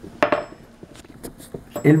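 A sharp metallic clink with a brief high ring about a quarter of a second in, followed by a few faint clicks and rustles of handling.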